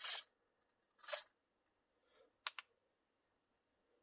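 Two quick, sharp clicks about a tenth of a second apart, a little past halfway, typical of a small toggle switch on an RC transmitter being flicked. A short breathy hiss comes about a second in.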